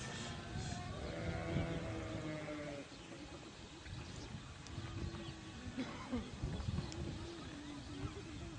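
An animal calling in long pitched cries: one drawn-out call in the first three seconds and another from about five seconds in to the end.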